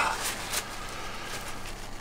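Paper towel rustling and crinkling as it is wrapped around and wiped over a removed diesel lift pump held in the hands, with a few faint handling ticks.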